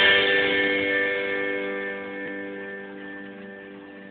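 A strummed guitar chord left ringing out, its notes holding steady and slowly dying away.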